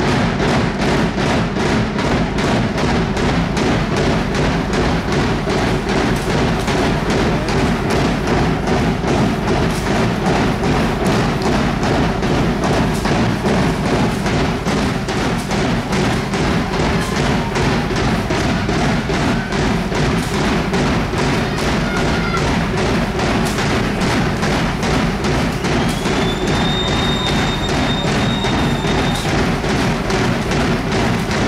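Fast, steady drumbeat accompanying a traditional dance. Near the end comes a high, whistle-like tone that rises and then holds.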